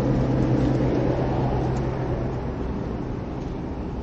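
A steady low machine hum with a rumbling wash of noise, fading away over the second half.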